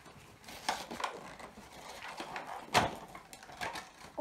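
A cardboard toy box with a plastic window being pulled open by hand: rustling with a few sharp tearing and knocking sounds, the loudest about three quarters of the way through.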